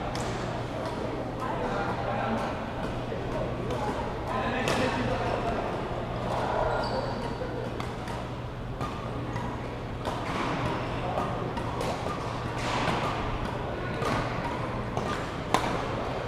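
Badminton rackets striking shuttlecocks, sharp clicks scattered irregularly through, over the chatter of many players on surrounding courts and a steady low hum. One harder stroke stands out near the end.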